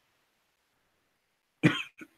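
Quiet room tone, then a single short cough near the end.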